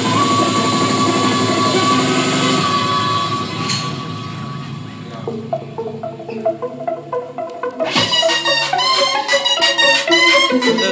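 Makina dance music played loud over a club sound system. The full, dense track thins out about halfway through to a sparse run of short melodic notes, then a bright, high riff cuts in sharply about eight seconds in.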